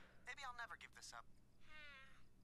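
Faint voices from a cartoon's soundtrack, followed near the end by a short high-pitched cry.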